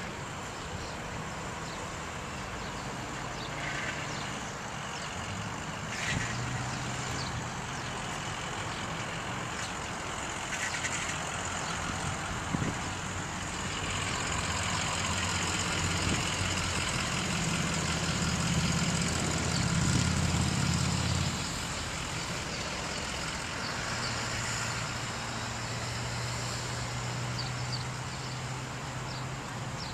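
Motor vehicle engine running, a low hum that swells in the middle and drops back about three-quarters of the way through, over steady outdoor background noise.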